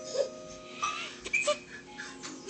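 Gentle children's-video music playing from a TV, with a baby's short excited vocal sounds breaking in a few times.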